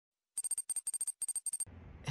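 Logo sound effect: a rapid, high-pitched tinkling chime, about ten short ringing pulses a second for just over a second, giving way to faint room noise near the end.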